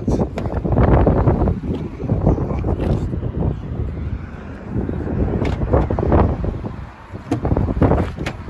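Wind buffeting a phone microphone outdoors, a rough, uneven rumble with handling noise. A couple of sharp clicks near the end come as a car door is opened.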